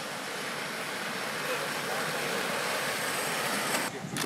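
Inline speed skates rolling on an asphalt road as a line of skaters passes close by: a steady rushing hiss of wheels that grows slowly louder, then cuts off suddenly near the end.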